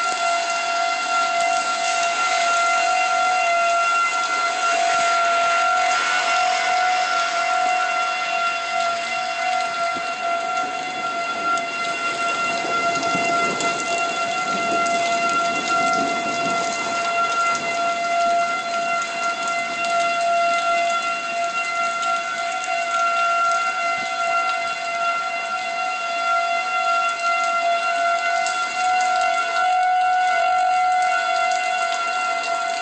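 Outdoor storm warning siren sounding one steady tone that does not rise or fall, over a rushing noise that swells about halfway through.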